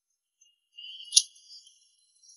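A short, high jingling chime: a faint shimmer swells just under a second in, peaks in one bright ding, and fades out.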